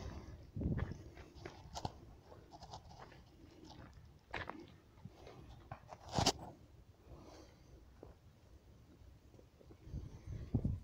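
Footsteps on a stony path with leaves and twigs brushing past, a scatter of irregular light clicks and rustles, the sharpest a single snap about six seconds in.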